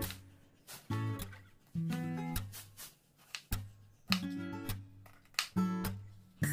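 Background music played on plucked acoustic guitar, in short phrases of notes about once a second.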